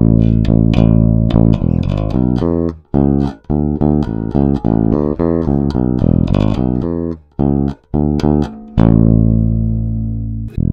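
Sterling by Music Man Sub StingRay 4 electric bass played unaccompanied, its active EQ set to full volume with the treble fully boosted, recorded direct from the amp's DI. A line of plucked notes, then a long note near the end left ringing and fading.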